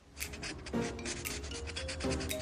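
Felt-tip marker rubbing across paper in several quick short strokes a second, over background music.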